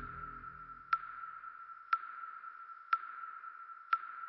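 Score and sound design: a single-pitched electronic ping repeats about once a second, each with a sharp click and a short ringing tail. Low backing music fades out in the first second and a half.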